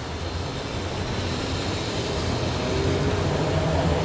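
A distant engine droning steadily with a low hum, growing slightly louder.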